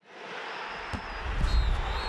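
Broadcast transition sound effect under an animated title graphic: after a brief silence, a noisy whoosh fades in, with a sharp click just under a second in and a deep bass boom about a second and a half in.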